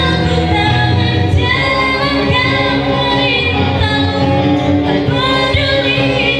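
Live band music: a woman sings a melody with long held notes that bend in pitch, over acoustic guitar, electric guitar and bass guitar.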